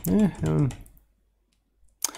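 A computer keyboard key click, then a man speaking briefly in a low mutter, then about a second of near silence.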